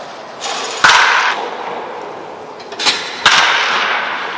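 Baseball bat cracking against pitched balls in a batting cage: two sharp hits, about a second in and again past three seconds, each with a lighter knock a moment before it.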